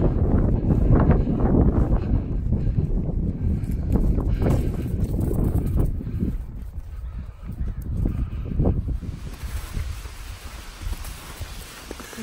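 Wind buffeting the microphone in a heavy rumble, with footfalls coming through it, while walking outdoors. It drops away about nine seconds in to a quieter, even hiss.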